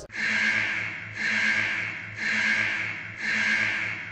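Heavy, hissing breaths, one about every second, over a low pulsing hum.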